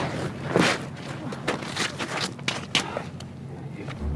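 A person's body scuffing and feet crunching on gritty, crusty ground as they get up and step about, a string of short, sharp crunches.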